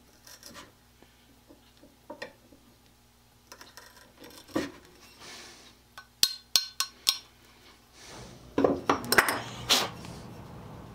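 A small metal blade scraping and clicking against a cast-iron plane body as paint-stuck skewer pins are picked out of its holes: scattered light clicks, a quick run of sharp metallic clicks a little past the middle, and louder handling clatter near the end.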